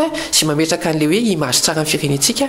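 Speech only: a man speaking without pause, as in a radio news bulletin.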